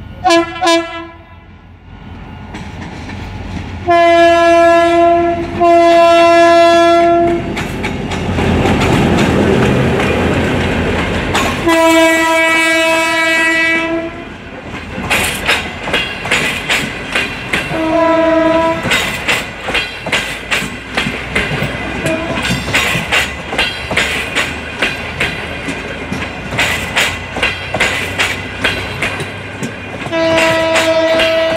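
GT22 diesel-electric locomotive's horn sounding a series of blasts: a short toot, two long blasts, another long blast and a short one, with a rising rumble from the locomotive passing in between. After that, the Chinese-built passenger coaches roll past with a steady clickety-clack of wheels over rail joints.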